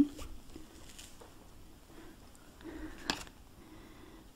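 Quiet handling of a small plastic battery-powered toy mouse and a paper instruction sheet, with one sharp click about three seconds in.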